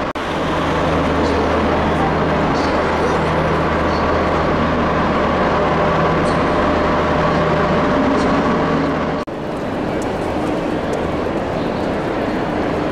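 Railway-station concourse ambience: a steady low hum under a continuous wash of noise and background voices. About nine seconds in, the hum cuts off abruptly and the ambience changes.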